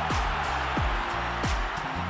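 Background music with a steady beat: deep, falling bass-drum hits about every 0.7 seconds over sustained low notes and a bright, hiss-like wash.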